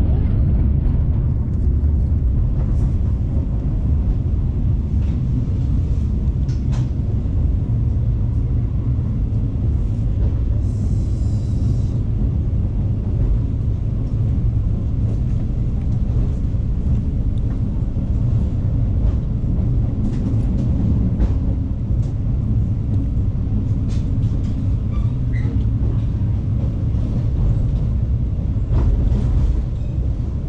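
Steady low rumble of an executive-class passenger train coach running along the track, heard from inside the coach, with a few faint clicks and a brief hiss near the middle.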